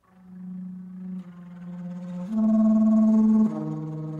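Bass flute playing slow, sustained low notes: a note swells in from silence, steps down a little, then moves up to a louder held note about two seconds in and drops lower again shortly before the end.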